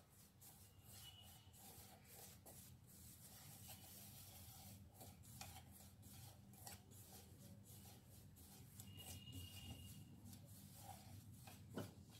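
Very faint rubbing and scratching of fingers working oil into whole-wheat flour in a stainless steel bowl, rubbing the flour to a crumbly, breadcrumb-like texture for puri dough.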